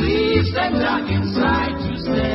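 Close-harmony vocal group singing over a band accompaniment, with a bass note pulsing about twice a second.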